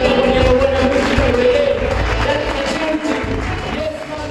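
Live reggae song: a male singer's voice over a DJ-played backing track with a heavy bass line. The sound gradually fades over the second half.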